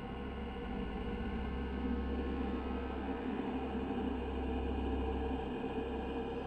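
Dark ambient background music: a low, steady drone of held tones.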